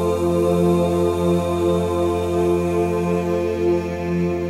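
Devotional mantra chanting in long held notes over a steady low drone.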